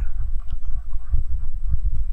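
Steady low rumble of background noise with a few faint, soft taps in a pause between words.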